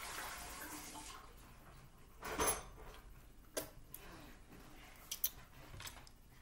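Handling noises at a counter: a short scrape about two seconds in, the loudest sound, then a few sharp clicks and taps, as of a spoon and dishes.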